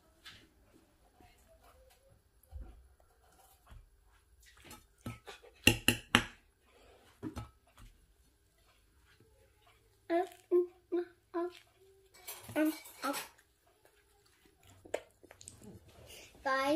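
Metal fork clinking and scraping against a plate while a waffle is cut and eaten, with a few loud sharp clinks about six seconds in. Short wordless voice sounds come twice in the second half.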